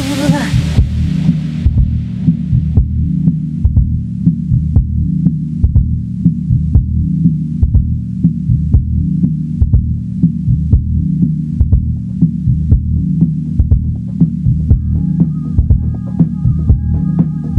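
Electronic dance music from a DJ set with its high end filtered away: the upper sound fades out in the first couple of seconds, leaving a steady, muffled bass line and kick beat with faint ticks on top. A high synth melody comes back in near the end.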